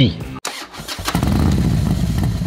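Motorcycle engine running as the bike is ridden, coming in about half a second in and settling into a steady low rumble by about a second in.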